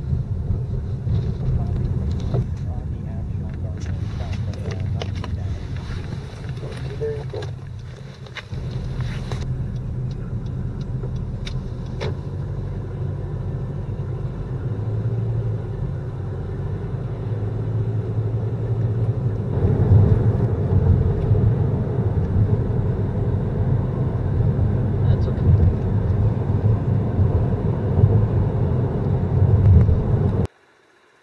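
Car cabin noise while driving: a steady low rumble of engine and tyres on the road, briefly dropping just before 8 seconds in and growing louder from about two-thirds of the way through as the car picks up speed.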